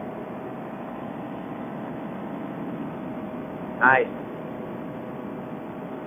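Steady drone of a paramotor engine and propeller in flight, heard muffled through a helmet intercom microphone, with an even level throughout.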